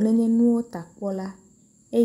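A voice speaking Ewe in short phrases with a pause of about a second, over a faint, steady high-pitched whine.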